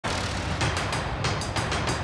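Dramatic news title sting: a dense rushing sound effect over a low rumble, cut with rapid drum-like hits about five times a second.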